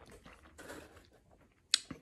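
A person chewing a mouthful of crispy pizza, soft and irregular, then a single sharp click near the end.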